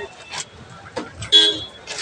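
A short vehicle horn toot about one and a half seconds in, over the noise of a street crowd, with a few sharp cracks.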